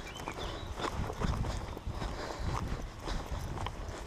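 Irregular crunching and crackling of movement over a dirt track strewn with dry twigs and brush, several small cracks a second, over a low rumble on the microphone.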